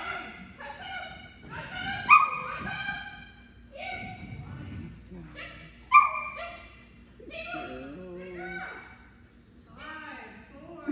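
A small dog barking and yipping in short, high-pitched calls, the two loudest sharp barks about two seconds and six seconds in.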